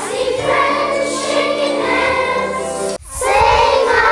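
A group of children singing together in unison, a choir of young voices. About three seconds in the singing breaks off abruptly and a different group of children's voices takes over.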